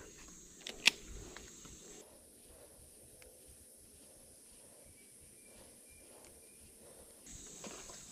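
Mostly near silence outdoors, with one sharp click about a second in and four faint, evenly spaced short high chirps later on.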